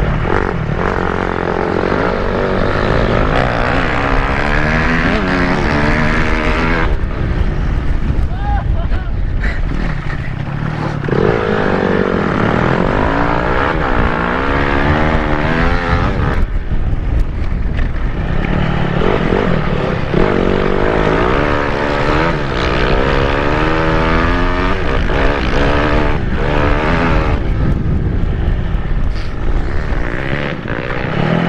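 Dirt bike engine revving up and easing off again and again while riding, with the throttle backing off about seven seconds in and again around sixteen seconds, over steady wind noise.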